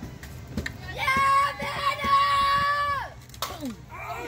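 A girl's voice holds a long, drawn-out cheer on one high pitch for about two seconds, falling at the end. Just after it a softball bat cracks sharply against the ball.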